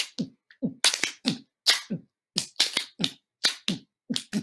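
A person beatboxing a drum beat with the mouth: short low 'boom' kicks alternating with hissing cymbal-like 'tss' sounds in a quick, steady rhythm of about five beats a second.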